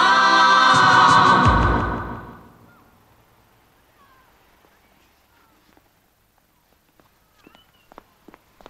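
Choral music of held, sung chords that fades out about two seconds in. Then near quiet with a few faint chirps, and quick footsteps starting just before the end.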